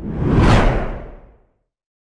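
A whoosh sound effect for a logo sting. It is a rushing swell with a deep low end that builds to a peak about half a second in, then fades away by about a second and a half.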